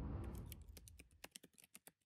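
A quick run of about a dozen faint, sharp clicks over a low rumble that fades away; the audio cuts off suddenly near the end.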